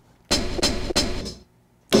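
Sampled snare drum played from an E-mu SP-1200 sampler: three quick hits about a third of a second apart, with some bass and crunch under a sharp snap. The hits ring out and fade about a second and a half in.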